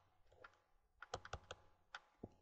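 Faint, sharp clicks of a pen or stylus tapping on a writing tablet during handwriting: a single click, then a quick run of about four around the middle, and one more near the end, over near silence.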